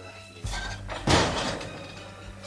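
A refrigerator door slammed shut about a second in: one loud thud with a short ring after it.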